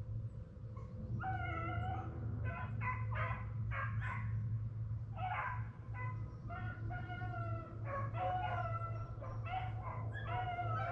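A pack of rabbit hounds baying on a rabbit's trail in the chase, a steady run of short overlapping howling barks, over a steady low hum.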